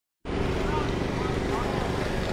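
Busy street ambience: a steady low hum of vehicle engines with faint distant voices, starting about a quarter second in.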